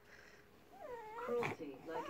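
Baby whining and fussing in short, wavering cries as he strains on his tummy to crawl, starting a little under a second in.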